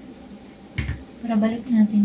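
A single dull knock of hard plastic vacuum parts being handled, a little under a second in, followed by a woman's voice.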